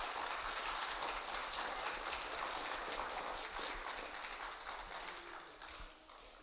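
Audience applauding, a dense patter of many hands clapping that fades away toward the end.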